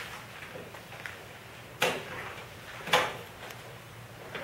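Two sharp knocks a little over a second apart, the second the louder, from objects being handled on a lectern, over quiet room tone.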